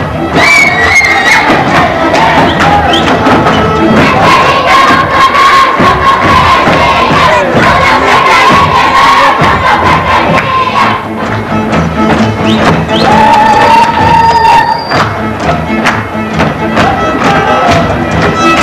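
Live Hungarian folk band, fiddle and double bass, playing a fast dance tune, with the dancers' voices shouting and whooping over it and a dense clatter of feet stamping on the stage floor.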